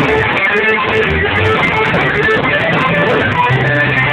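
Live band playing loudly: guitar, bass and drums with cymbals.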